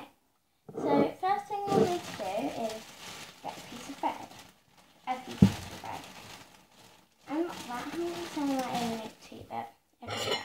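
A girl's voice, vocalizing without clear words in two stretches, with one sharp knock in the pause between them, about five and a half seconds in.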